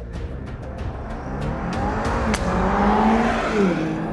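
Sports car accelerating hard down a runway and passing by, its engine note rising, loudest about three seconds in, then dropping in pitch as it goes past. A single sharp crack a little over two seconds in is a driver striking the golf ball.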